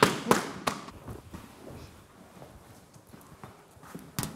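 Boxing gloves striking leather focus mitts: three sharp smacks in quick succession in the first second, followed by fainter knocks.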